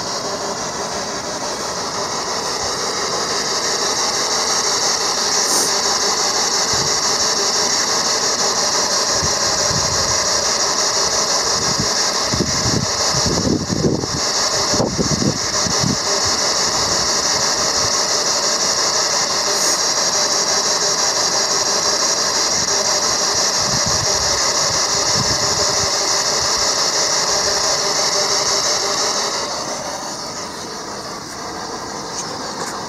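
Spirit-box radio ("noise box") static: a loud, steady hiss with faint radio tones under it. It builds over the first few seconds and cuts off suddenly just before the end.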